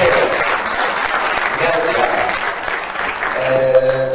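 Audience applauding, with a voice starting to speak over the clapping in the second half.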